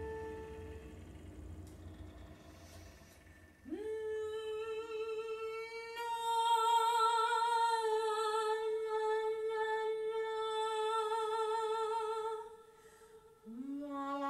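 A woman singing one long held note with vibrato, sliding up into it about four seconds in and breaking off near the end, then swooping up into a lower note just before the end. At the start a flute note fades out over a low hum.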